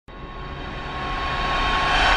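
A whoosh-like swell of noise in a channel-logo intro, growing steadily louder, with a faint steady tone and a low hum under it.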